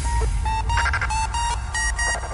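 Hardcore electronic dance music from a live DJ set in a breakdown passage: a deep sustained bass drone with short beeping synth notes and clipped high synth stabs repeating above it.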